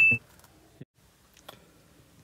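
A short electronic beep, a video-editing sound effect for an on-screen caption, that steps down to a single high tone and stops just after the start. It is followed by quiet with two faint clicks.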